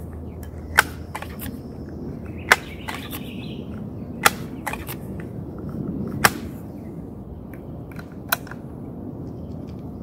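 Sheridan Silver Streak .20-calibre multi-pump pneumatic air rifle being pumped up: a sharp click with each stroke of the pump arm, about every two seconds, five times, the last one weaker.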